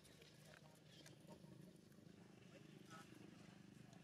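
Near silence: faint outdoor background, with a low murmur like distant voices and a few faint clicks.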